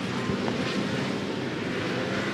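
A pack of V8 Supercars touring cars racing through a corner: their V8 engines make a steady drone under a broad rushing noise, with no single car standing out.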